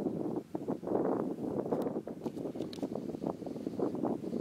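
Wind buffeting the microphone in uneven gusts, with a few faint high clicks past the middle.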